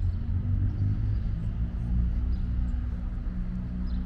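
Steady low rumble of street traffic around an open town square.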